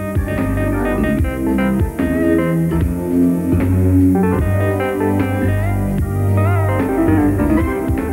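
A band's recorded track played back: drum kit hits over bass and keyboard lines, with a wavering, bending melodic line about six to seven seconds in.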